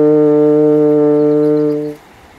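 French horn holding one long, steady low note, the last note of the tune, which stops just before the end.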